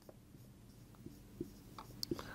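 Marker pen writing on a whiteboard: faint, soft scratching with a few light taps as the letters are formed.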